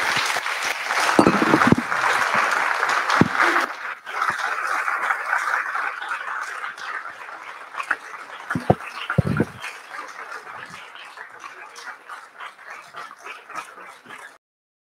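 Audience applauding, full for the first few seconds, then dipping about four seconds in and continuing more thinly as the clapping dies away. A few short low thumps stand out from it.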